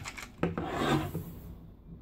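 Plastic parts of a knock-off Transformers figure being handled: a sharp click about half a second in, then a short scraping rub.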